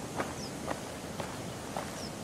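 A man's footsteps in shoes, even and unhurried at about two steps a second, over a faint steady outdoor hiss.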